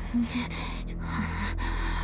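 A woman's sharp, breathy exhales and gasps, several in quick succession, over a low, steady music bed.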